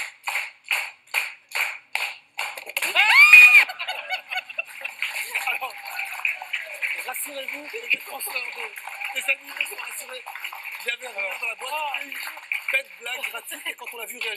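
Studio audience clapping in unison, about two and a half claps a second, then a woman's sharp high scream about three seconds in as the box is opened. The audience then breaks into steady applause mixed with laughter and shouts.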